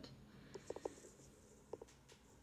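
Near silence: room tone, with a few faint short clicks about half a second in and again near the end.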